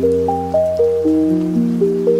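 Ambient piano music: an even run of single notes, about four a second, ringing on over held low notes.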